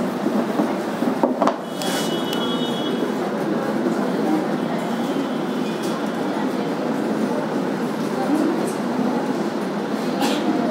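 Steady rushing background noise throughout, with a few light clicks and short high squeaks of a marker drawing on a whiteboard, about two seconds in and again around five seconds.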